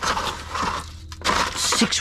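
Aluminium foil and foil trays being crumpled and crushed by gloved hands, in irregular bursts of crinkling.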